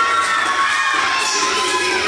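Excited whooping and cheering voices. One long, high 'woo' is held for over a second and slowly falls in pitch, over the dance track.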